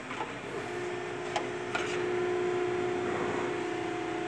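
Multimeter continuity beeper sounding one steady low tone, starting about half a second in, as the probes bridge the safety relay's S11–S12 terminals: the contact is closed. A few light clicks of the probes come in the first two seconds.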